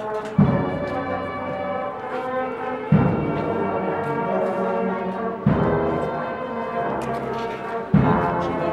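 Marching band brass playing a slow procession march in sustained chords, with a heavy drum stroke about every two and a half seconds where the chords change.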